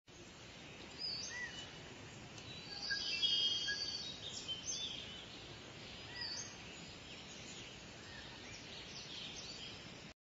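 Faint outdoor nature ambience of scattered short bird chirps over a steady soft hiss, with a busier run of chirping about three seconds in.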